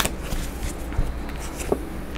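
Tarot cards being handled as one is drawn from the deck: a sharp snap at the start, then a few light taps and rustles of card stock.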